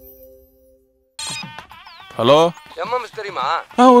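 A sustained electronic logo jingle fades out. After about a second of quiet, a film soundtrack starts with warbling pitched sounds that waver strongly up and down. A voice begins near the end.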